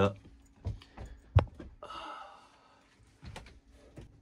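Scattered light clicks and knocks of hands and tools handling wiring and the camera at close range, one sharp click about a second and a half in the loudest, a soft rustle after it, and a faint steady hum underneath.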